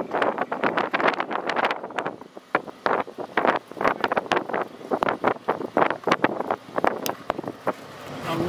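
Wind buffeting the microphone, a dense irregular crackle and rumble.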